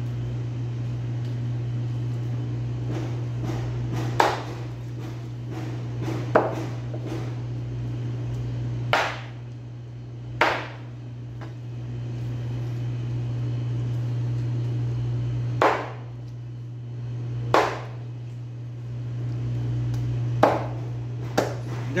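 Meat cleaver chopping raw meat on a thick plastic cutting board: about eight sharp chops, spaced irregularly a second or more apart, over a steady low hum.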